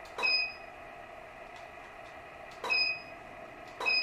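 Profoto studio flash heads being test-fired three times. Each firing is a sharp pop followed by a short high beep, the unit's ready signal after recycling.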